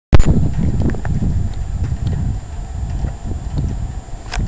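Low, irregular wind rumble buffeting a camcorder microphone outdoors, starting abruptly as the footage cuts in.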